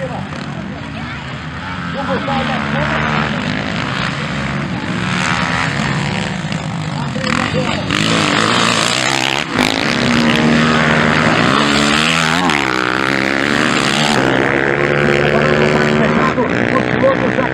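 Dirt bike engines revving up and down as motocross bikes race around a dirt track, the pitch rising and falling with throttle and gear changes. The sound gets louder about halfway through as a bike passes close by.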